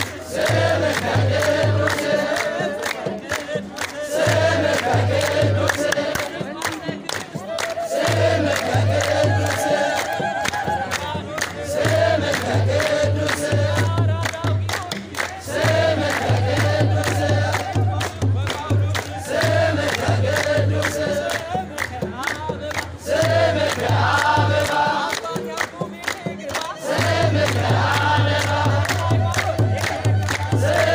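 A crowd of worshippers singing an Ethiopian Orthodox mezmur together, with hand-clapping and a steady kebero drumbeat. The drumbeat drops out for a couple of seconds a few times while the singing carries on.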